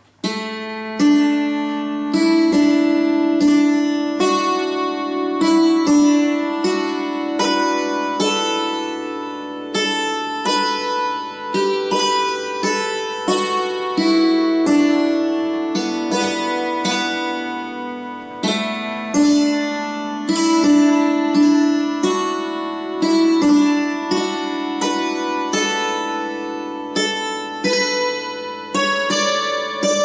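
Hammered dulcimer played slowly with two hammers, a waltz tune struck note by note, each string ringing on under the next.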